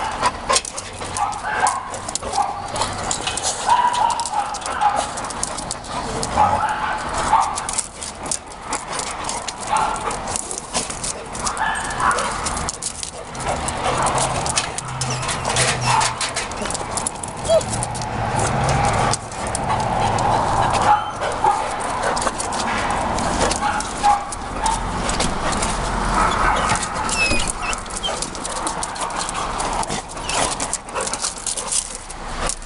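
A beagle and a larger long-haired dog play-fighting, with barks, yips and whimpers coming in irregular bursts throughout.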